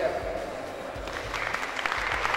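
Crowd applauding, the clapping swelling about a second in.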